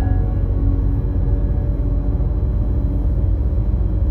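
Slow ambient background music of long held notes, over a steady low rumble from the moving car.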